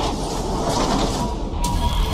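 Logo-animation sound effects: a dense whooshing swell over a deep bass rumble, with a brighter hiss joining about one and a half seconds in.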